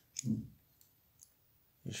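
Faint handling clicks of a miniature 1/6-scale M60 machine gun model being turned over in the fingers: a soft knock with a sharp click a fraction of a second in, then a couple of fainter clicks.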